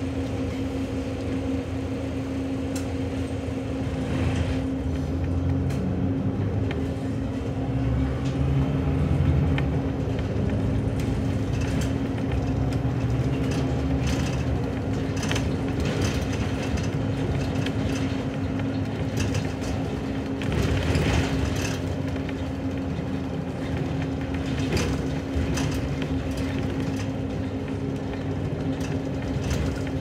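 Inside a city bus: the engine runs under a steady hum and grows louder a few seconds in as the bus pulls away, with light rattles and clicks from the cabin as it drives.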